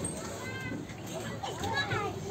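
Children's voices calling and chattering, with a couple of high shouts about half a second in and again near the end.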